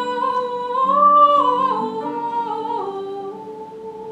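Female soprano singing a slow melody in long held notes, rising to a higher note about a second in and then stepping down. A soft lute and viola da gamba accompaniment plays beneath her.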